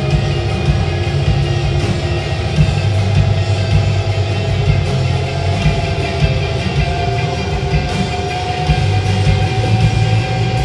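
A band playing live: a loud, dense, sustained wall of music with a steady low end and long held notes, one of which rises slightly in pitch in the second half.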